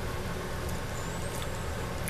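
A steady low background hum with no distinct events.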